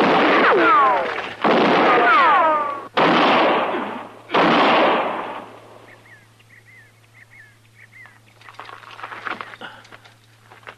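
Radio-drama gunfire: four loud shots about a second and a half apart, the first two with a falling ricochet-like whine and each with an echoing tail that dies away after about five seconds.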